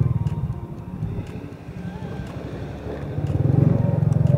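Motorcycle engine running as it is ridden along a street. It quietens about a second and a half in and grows louder again near the end.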